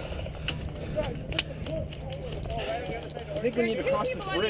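Faint distant voices of players shouting, with a few sharp clicks between half a second and a second and a half in.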